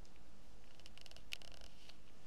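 Faint handling noise of craft materials: a few soft clicks and rustles about a second in, over a steady low hiss.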